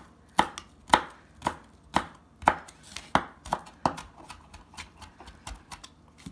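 Kitchen knife chopping celery leaves on a flexible cutting mat, a sharp knock from each stroke about twice a second, then lighter and quicker strokes in the last two seconds.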